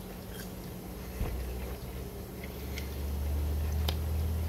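A man chewing a fast-food chip (French fry) close to the microphone, with a few faint mouth clicks over a steady low hum.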